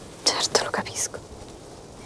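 A woman's brief, soft spoken reply of a few words, over in the first second.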